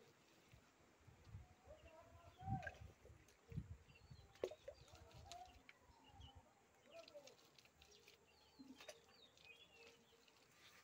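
Faint bird chirps and calls in the background. In the first six seconds or so there are soft low thuds as wet mud is pressed and smoothed by hand.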